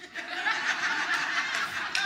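An audience chuckling and laughing together, many voices at once, swelling in just after the start.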